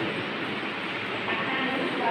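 Indistinct voices of people talking in a room, heard over a steady background noise.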